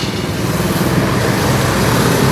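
Road traffic noise: passing vehicles' engines and tyres making a steady low noise.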